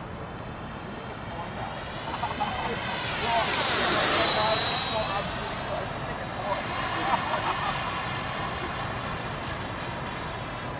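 Freewing F-22 RC jet's electric ducted fans whining as the model flies past: the high whine swells to its loudest about four seconds in, dropping in pitch as it goes by, then a whine climbs in pitch about six and a half seconds in and holds high.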